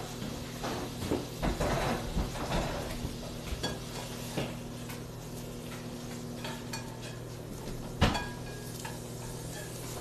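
Dishes, pans and utensils clattering and clinking as they are handled and tidied away, busiest in the first half, with one sharper knock about eight seconds in. A steady low hum runs underneath.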